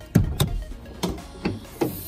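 Car hood being released and opened: the hood-release lever pulled under the dashboard and the bonnet latch popping, heard as about five sharp clicks and knocks, two close together at the start and the rest spread over the next second and a half.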